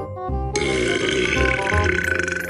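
A long burp, starting about half a second in and still going at the end, over light background music.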